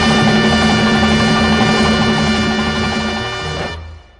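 Recorded salsa music: the band holds a long sustained chord, brass on top of a pulsing bass line, which fades away near the end, the close of a song.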